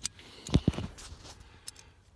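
Handling noise from hands working with a small switch and its wiring: a few light clicks and knocks about half a second in and one more near the end, over quiet background.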